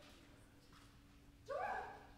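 Quiet stage room tone with a faint steady hum, then about one and a half seconds in a single short voiced call from a performer, rising at its start and lasting about half a second.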